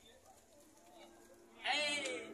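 A faint, quiet stretch, then near the end a loud, wavering animal call with a quavering pitch starts and carries on past the end.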